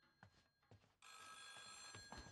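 Telephone ringing faintly, one ring starting about a second in.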